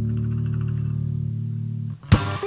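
A guitar chord over bass, held and ringing steadily, then cut off just before the end.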